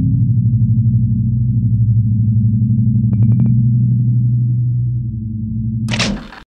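Outro logo sound effect: a loud, low buzzing hum with a fast flutter, broken by a quick run of about six short high blips a little after three seconds in, and a brief burst of hiss at the very end.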